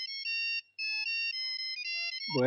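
Mobile phone ringing with an electronic melody ringtone: a run of high beeping notes, broken by a short gap just over half a second in.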